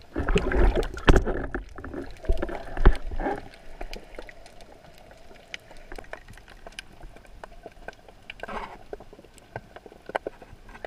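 Water rushing and splashing around an underwater camera during a surface dive, loud for the first three seconds or so. It then gives way to quieter underwater ambience full of small scattered clicks, with a short rush of water near the end.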